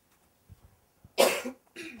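A man coughs once, a little over a second in, followed by a shorter, softer sound.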